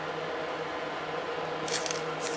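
Room tone: a steady faint hum and hiss, with a brief faint rustle near the end.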